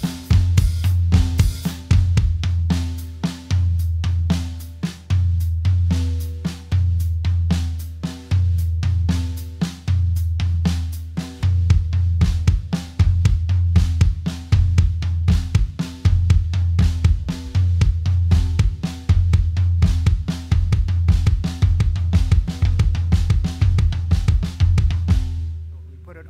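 Acoustic drum kit playing a fast, layered linear lick: hand triplets with a flam on the last note of each group, the left hand moving between snare and hi-hat while the right hand moves against it, over a bass-drum shuffle with the hi-hat opening. The playing runs continuously and stops just before the end.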